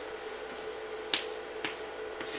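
Chalk writing on a chalkboard: two sharp taps about half a second apart as the chalk strikes the board, with light scratching between them.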